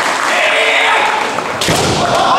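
Kendo fencers' drawn-out kiai shouts, then a loud thump near the end as they lunge in with a strike and close to body contact on the wooden gym floor.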